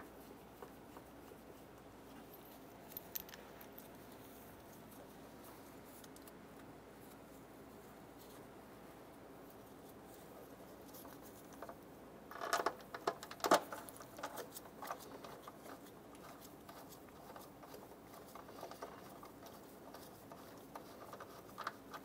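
Faint metallic clicks and scrapes of a socket and extension turning intake manifold bolts in by hand. A quick run of sharper clicks comes about twelve to fourteen seconds in.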